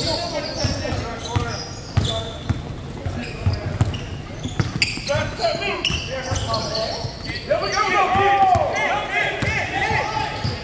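A basketball being dribbled on a hardwood gym floor, with rubber-soled sneakers squeaking as players run and cut. A run of squeaks comes near the end, and the sound echoes in the large hall.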